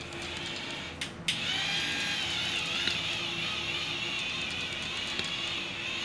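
Touch Beauty electric facial cleansing brush running against the skin: two clicks about a second in, then a steady high motor whine whose pitch wavers slowly as the brush is pressed and moved over the face.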